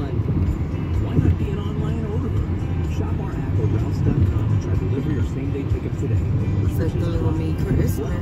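Car radio playing music and voices inside a moving car's cabin, over steady road and engine rumble.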